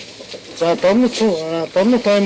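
A man's voice speaking in short phrases, after a brief pause at the start.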